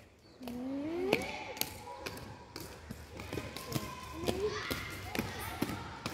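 Inline skate wheels rolling and clicking over tiled paving, a scatter of sharp irregular taps, with children's voices calling out, one rising call about half a second in.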